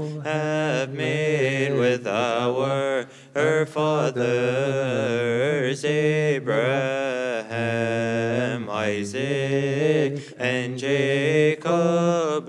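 Male chanting of a Coptic Orthodox hymn in Coptic, a slow melody of long held notes that wind up and down in pitch. There is a brief pause about three seconds in.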